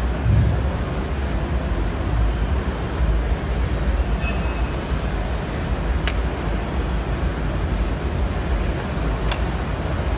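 Steady low rumble and hiss of a large exhibition hall's background noise, with one sharp click about six seconds in.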